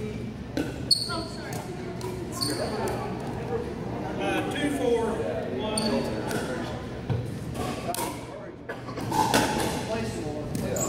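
Pickleball rally: sharp pocks of paddles hitting the plastic ball and the ball bouncing on a hardwood gym floor, echoing in the large hall, with short sneaker squeaks.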